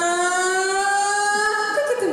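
A woman singing one long held note into a microphone, its pitch creeping slowly upward, then sliding down near the end.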